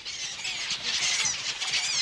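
Nesting bird colony calling: a dense chorus of many overlapping high-pitched squealing calls.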